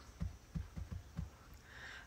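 Soft low thumps, about five of them at uneven intervals, over a faint steady background hum.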